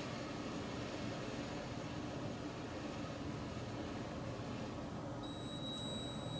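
A steady breath blown into the mouthpiece of a small keychain breathalyzer, then about five seconds in a high-pitched steady electronic tone from the breathalyzer starts and holds.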